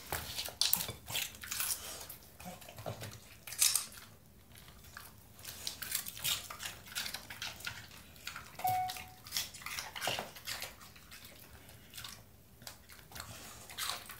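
A Spanish water dog eating raw red bell pepper and cucumber: irregular crunching and chewing with sharp clicks and knocks, some from the plate on the floor. A brief high squeak comes a little past halfway.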